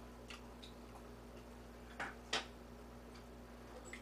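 A few faint, unevenly spaced clicks and taps of a kitchen knife against a plate and cutting board, with two sharper clicks about two seconds in, over a faint steady hum.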